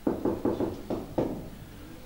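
Marker pen knocking against a whiteboard as a word is written: a quick series of about six knocks over the first second or so.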